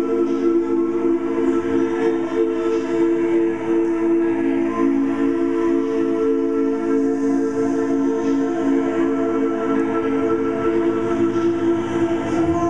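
Layered live-looped voices holding a steady sustained chord, several long tones stacked together like a choir drone.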